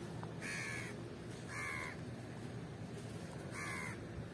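A crow cawing: three short caws, the last near the end.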